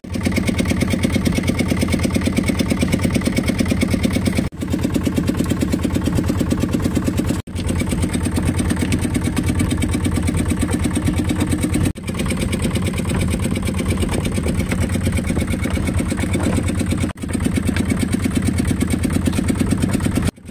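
A fishing boat's engine runs steadily at a low, even pulse. The sound cuts out briefly four times.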